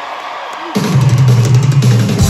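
Rock drum kit played live through a concert sound system, coming in suddenly and loudly about three quarters of a second in with heavy bass drum and snare strikes, after a moment of crowd noise.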